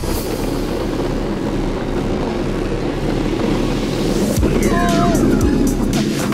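Wiggle cart's small plastic wheels rolling fast over rough, wet asphalt, a steady gritty rumble. Around four and a half seconds in, a brief pitched call or shout rises and falls over it.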